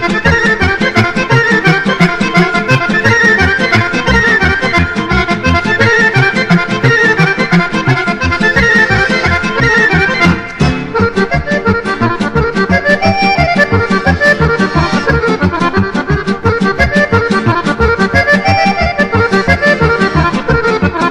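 A Serbian kolo dance tune played on accordion: quick melodic runs over an even, steady bass-and-chord beat, with a brief drop in loudness about ten seconds in.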